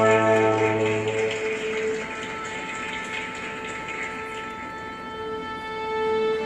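Symphony orchestra playing: a loud, full held chord with deep bass releases about a second in, leaving a softer passage of sustained higher notes, and the full orchestra swells back in near the end.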